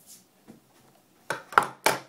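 Quiet room, then a little over a second in three quick, loud rubbing knocks as the recording device is picked up and handled.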